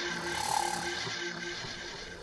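A TV news programme's return-from-break music sting, its last sustained notes ringing and gradually fading out.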